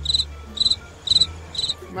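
Cricket chirping sound effect: four short, evenly spaced chirps about half a second apart, over a low steady hum. It is the stock gag sound for an awkward silence.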